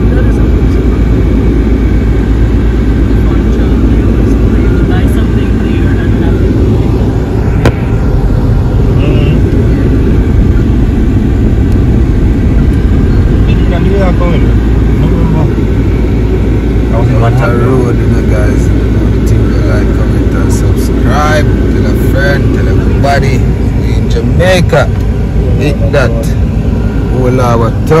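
Car cabin noise while driving: steady low road and engine rumble, with voices over it in the second half.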